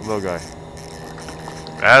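A man speaking briefly at the start and again near the end, with a low steady hum in the pause between.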